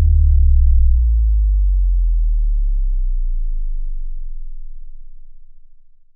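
A deep synthesized bass tone sliding slowly downward in pitch and fading out near the end: an electronic outro sting.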